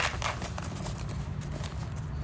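Light irregular knocks and rubbing of a phone being handled close to the microphone, over a steady low rumble.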